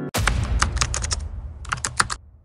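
Computer-keyboard typing sound effect: a run of quick key clicks with a denser flurry near the end, over a low rumble.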